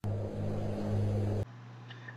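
Steady low hum over a hiss that drops suddenly about one and a half seconds in to a fainter, steady hum.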